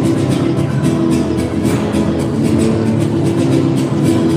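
Guitar music for a malambo, with rapid percussive stamping and striking of a dancer's boots on the stage floor throughout.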